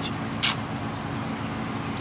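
Steady low background rumble with a faint hum, like a distant engine, and a short hiss about half a second in.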